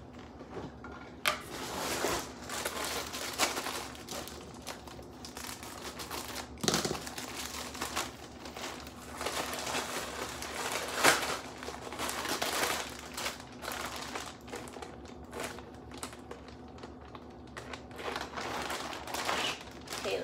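Plastic poly mailer bag crinkling and rustling in irregular bursts as it is handled and opened and a garment pulled out, with a few sharp crackles.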